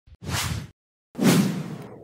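Two swoosh sound effects from a TV news intro's animated graphics. The first is short; the second, about a second in, is louder and fades away.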